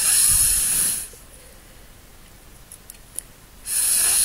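Breath blown hard through a drinking straw onto wet watercolour paint, pushing the drops across the paper into streaks. Two puffs of rushing air, about a second each: one at the start and one near the end.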